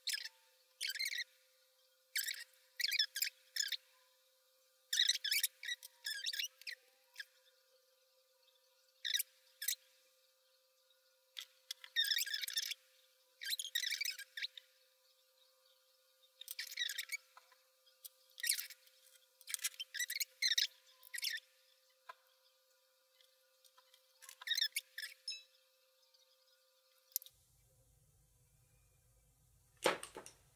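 Short, scratchy, high-pitched bursts of a makeup brush sweeping over the eyelid and palette, played back sped up so they come out as squeaky chirps. The bursts stop shortly before the end.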